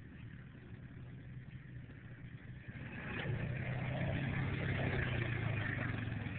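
Honda Foreman 500 ATV's single-cylinder engine running with a steady low note as the quad comes down a steep rock slope. It is faint at first and grows louder from about three seconds in as the machine nears.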